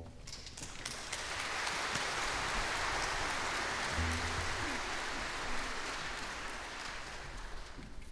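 Congregation applauding, the clapping swelling up within the first second and slowly dying away toward the end.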